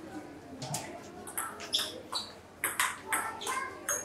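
Table tennis rally: the ball clicking sharply off the paddles and bouncing on the table, about nine hits a fraction of a second apart, coming quicker in the last couple of seconds.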